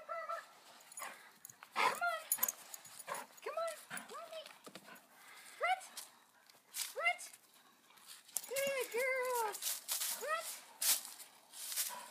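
Airedale terrier whining, in short high rising-and-falling yelps roughly once a second, with a quick run of several together about three quarters of the way through.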